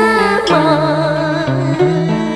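Cải lương song: a voice singing a wavering, ornamented melody over a traditional Vietnamese ensemble, with a bass line stepping from note to note underneath.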